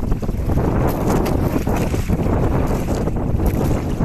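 Wind buffeting the microphone over a steady low rumble aboard a small fishing boat at sea, with a few light knocks.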